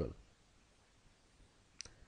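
Faint room tone, broken by a single short, sharp click near the end that advances the presentation slide.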